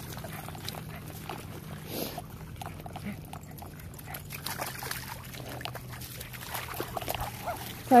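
A dog running through shallow water over wet, rippled sand, with scattered light splashes and patters.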